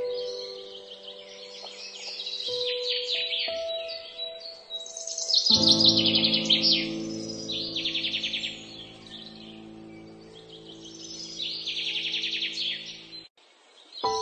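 Slow, soft piano music layered with bird song: bouts of rapid chirping trills recur over the sustained notes. A fuller, louder chord sounds about five and a half seconds in and rings on until the sound drops out briefly near the end.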